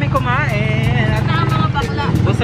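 A vehicle's engine running steadily with a low, pulsing rumble, heard from inside the crowded passenger cabin, with voices over it.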